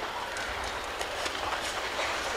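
Karate sparring on mats: a few sharp slaps and thuds of punches and kicks landing, over the steady murmur of a large indoor arena crowd.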